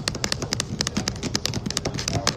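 A rapid, irregular run of sharp clicks and taps, about eight a second, like keys being pressed or small hard objects tapped on a counter.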